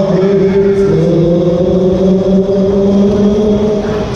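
Loud music from a Musik Express ride's sound system, long sustained notes that shift about a second in, over the low rumble of the ride's cars circling on their track.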